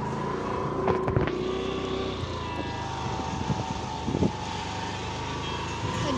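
A road vehicle running steadily on the move, with a few brief knocks about a second in and again past the middle.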